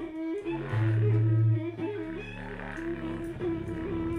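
Bowed cello and contrabass clarinet improvising together: a held, wavering middle note over lower sustained notes, with one loud low note swelling about a second in.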